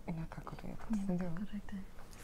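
Hushed speech: two women conferring in low voices.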